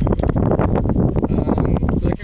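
Wind buffeting the camera's microphone: a loud, uneven rumble with gusty crackles.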